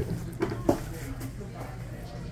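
A person laughing briefly in a few short bursts, then a low steady background hum.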